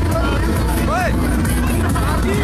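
Low, steady rumble of a moving fairground ride, with riders' voices shouting over it and one short rising-and-falling yell about a second in.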